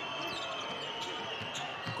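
A basketball dribbled on a hardwood court, bouncing several times about twice a second, over the steady noise of an arena crowd.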